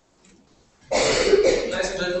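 A man clearing his throat into a lectern microphone, starting suddenly about a second in after near quiet and running into his voice.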